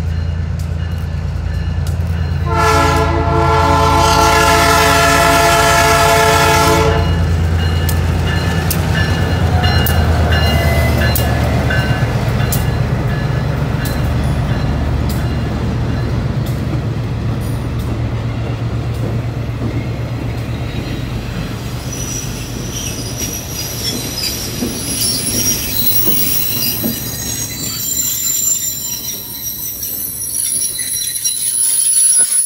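A diesel-hauled train passes a grade crossing. The locomotive's air horn sounds one long chord blast, about four seconds long and starting a couple of seconds in, over the steady low drone of the engine. The cars then roll by with wheel noise and high-pitched wheel squeal that grows toward the end.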